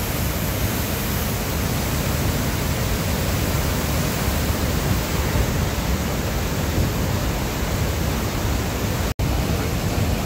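Floodwater pouring through a dam's open spillway gates and churning in the river below: a steady, loud rush of water. The sound breaks off for an instant about nine seconds in.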